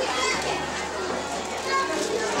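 Children's voices and indistinct chatter.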